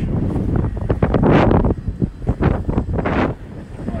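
Wind buffeting a phone microphone in several strong gusts, over the low steady rumble of a moving river-cruise boat. The gusts ease off near the end.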